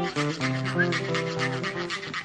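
Live acoustic guitar music with a fast, even scraping percussion rhythm over it. The music stops just before the end.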